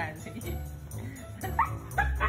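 Siberian husky vocalizing in short whines and yips while play-fighting, with a sharper rising yip about a second and a half in. Background music with a steady low beat plays underneath.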